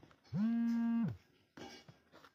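A man's voice holding one steady note for just under a second, its pitch sliding up at the start and down at the end.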